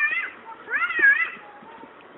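Labrador dog whining at donkeys: high-pitched cries that rise and fall, one just at the start and a louder, longer one about a second in.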